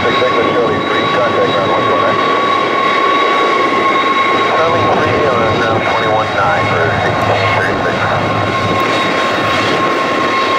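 McDonnell Douglas DC-10 freighter's three turbofan engines at taxi power as the jet rolls past: a steady rumble with a constant high-pitched whine.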